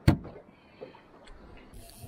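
A cooler lid banging shut with one sharp thud right at the start, followed by a few faint knocks.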